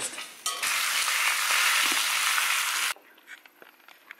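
Meat sizzling in a hot pan: a loud, steady hiss that cuts off suddenly about three seconds in. A few faint clicks and taps of dishes follow.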